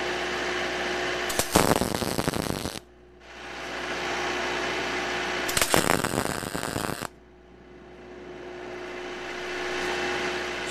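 MIG welder laying two tack welds on wrought iron: two bursts of crackling arc, each a little over a second long and ending abruptly, about four seconds apart, over a steady background hum.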